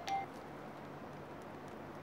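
The last note of a short electronic chime melody, a single clean beep right at the start, followed by steady faint room hum.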